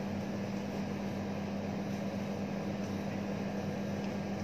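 Steady low electrical hum over an even hiss from a running ceiling fan.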